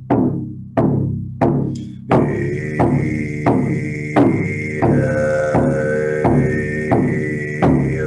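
Shamanic drum beaten at a steady heartbeat pace, about three strokes every two seconds, each one ringing down. About two seconds in, a didgeridoo drone joins under the beat and holds until near the end.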